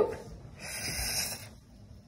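A person's breath drawn in through the mouth for about a second, a soft hiss between phrases of speech.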